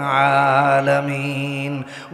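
A man's voice chanting a Quranic verse in a long melodic note, held steady for nearly two seconds and then cutting off shortly before the end.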